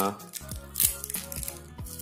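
Background music with soft plucked notes and a brief crinkle of a plastic blister pack being handled, the crinkle about a second in.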